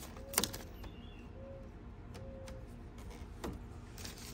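Fingers pressing a printed reflective vinyl overlay onto a plastic grille letter: a sharp crackle about half a second in and a fainter click about three and a half seconds in, over a low steady background hum.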